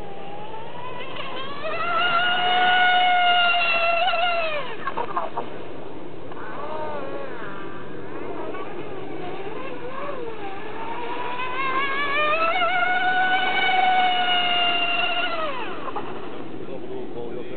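RC model speedboat running at speed, its high-pitched motor whine rising as it comes in, holding steady, then dropping sharply in pitch as it passes. This happens twice, about four seconds in and again near the end, with a lower, wavering whine in between as it turns.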